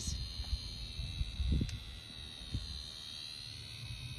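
A steady, high, thin buzzing whine coming from something caught and held in a dog's mouth, wavering a little near the end. A few soft low thumps sound about a second and a half in.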